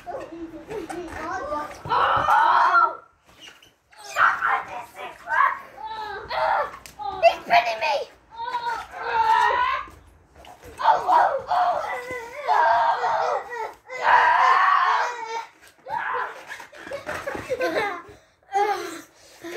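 Boys' voices shouting, screaming and laughing in bursts throughout, with no clear words.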